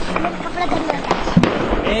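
Firecrackers going off, with a few sharp cracks a little after a second in, over background chatter of voices.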